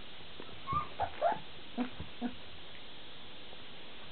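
Three-week-old golden retriever puppies whimpering: about six short whines in the first half, the first few high and thin, the last two lower. The owner takes the crying for the puppies wanting their mother.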